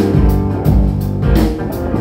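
Live rock trio playing: electric guitar over bass guitar and drum kit, with kick-drum hits keeping a steady beat.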